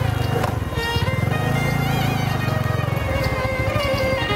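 Background music with held string-like tones over a motorcycle engine running. The engine is loudest in the middle and drops away near the end.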